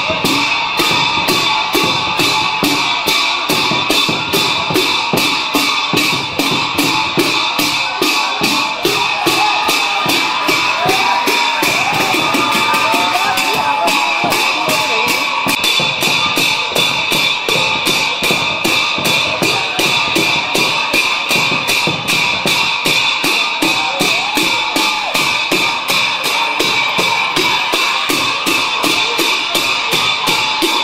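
A drum and cymbal ensemble plays a fast, even beat for the masked dance, the cymbals ringing on between strikes.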